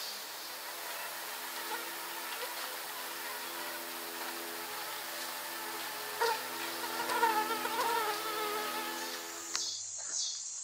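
Flying insect buzzing close to the microphone, a steady hum that wavers in pitch and grows louder for a couple of seconds past the middle, then cuts off near the end.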